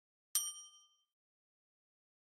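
Notification-bell 'ding' sound effect for a subscribe-button bell icon being clicked. It is a single bright chime about a third of a second in, several high tones ringing out and gone within a second.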